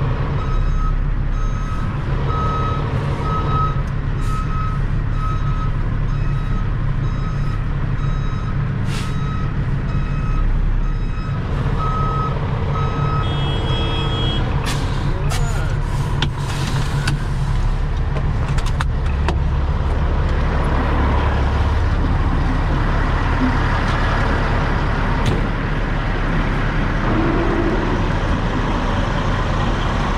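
A heavy tow truck's reversing alarm beeps steadily over the low rumble of its diesel engine as it backs up. About halfway through the beeping stops and the engine runs on with a rougher noise.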